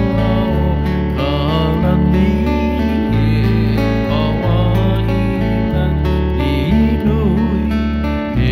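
Acoustic guitar playing a Hawaiian slack key melody with wavering, bent notes, over an electric bass guitar line whose low notes change about once a second.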